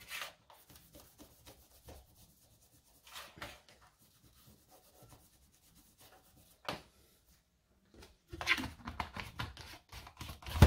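A cloth rag rubbing over small aluminium plates as they are wiped down with acetone to remove grease and oil, in faint intermittent strokes with a few brief handling sounds. Near the end there is a louder cluster of scrapes and knocks as a plate is handled and set down on the metal bench.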